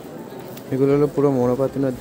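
A man's voice speaking, starting under a second in, over faint room noise.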